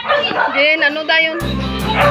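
A dog barking several times in quick succession, short high arched calls over background music that grows fuller about one and a half seconds in.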